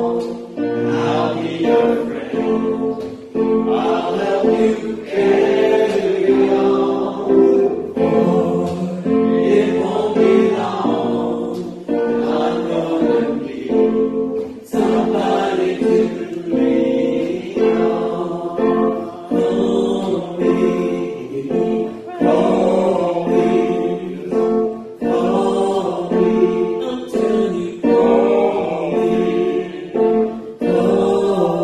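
A congregation singing a hymn together with acoustic guitar accompaniment, led by a voice on a microphone.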